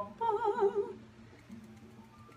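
A woman's voice singing one short note with a wide, wavering vibrato in the first second, over a faint steady low hum.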